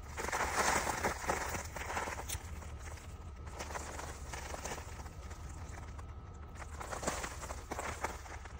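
Irregular rustling and crunching from someone moving and handling things in a vegetable garden: footsteps and contact with plants and soil. It is busiest in the first couple of seconds and again near the end.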